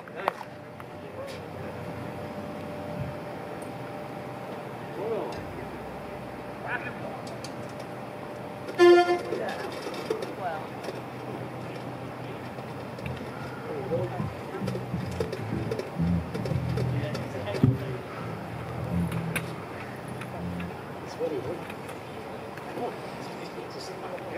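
Quiet pause between songs with low murmuring voices; about nine seconds in, a saxophone gives one short, loud honked note.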